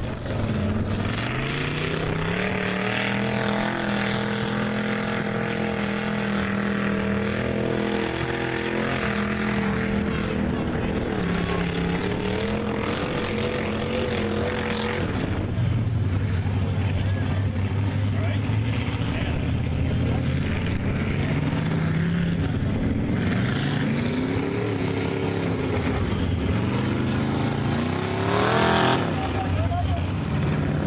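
Engines of lifted, big-tyred pickup trucks running and revving as they drive through mud. The pitch rises early on and holds, then rises and falls several times, with a sharp rev near the end.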